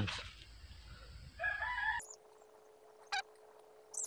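A rooster crows briefly about a second and a half in, cut off suddenly. After it the sound drops almost to silence, leaving a faint steady hum and one short click.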